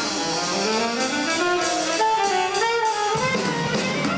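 Live big band playing an instrumental passage: saxophones and brass in ensemble lines that climb in pitch, over drum kit and cymbals.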